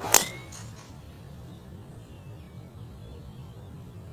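Driver striking a golf ball off the tee: one sharp, loud crack of the clubhead meeting the ball just after the start, with a brief ring after it.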